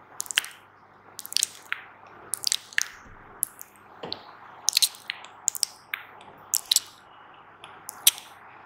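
ASMR mouth sounds close into a microphone: quick, wet clicks and smacks, irregular and often several in rapid succession.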